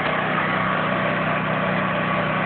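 An engine or motor running steadily at a constant pitch, with a low hum and an even noise on top.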